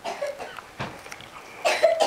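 A person coughs once near the end, a short loud burst, after a few faint knocks in the first second.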